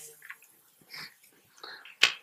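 A pause in speech: faint room tone with three soft, short noises, each about two-thirds of a second apart.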